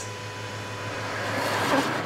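Car's electric power-seat motor humming as the driver's seat slides back automatically in easy exit mode, stopping about a second and a half in. A rushing noise swells near the end.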